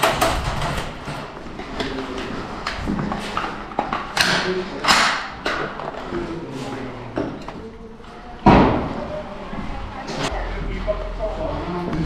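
Movement and handling noise in a bare, empty room, with scattered knocks and several sharp bangs, the loudest about eight and a half seconds in, and faint voices underneath.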